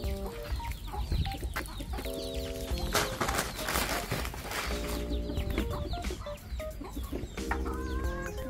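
Free-ranging chickens clucking and calling, with a few longer steady-pitched calls about two, five and seven and a half seconds in.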